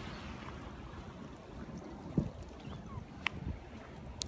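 Wind blowing across a phone microphone: an even rushing with a couple of low bumps, the loudest about two seconds in. A short high chirp sounds near the end.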